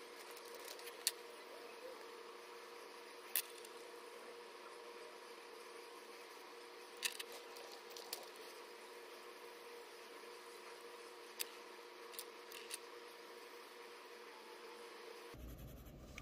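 Faint, steady hum with a handful of sharp, isolated clicks from marker pens being handled while colouring in a paper chart.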